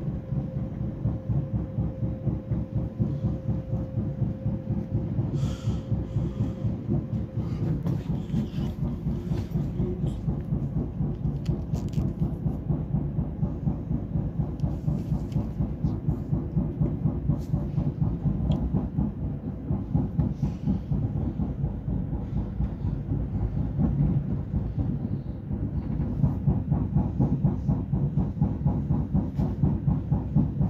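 Passenger train heard from inside the carriage while it runs at speed: a steady low rumble with fast, continuous clatter of the wheels over rail joints and switches. A faint steady whine runs for the first several seconds, and there are a few sharper clicks and squeaks between about five and twelve seconds in.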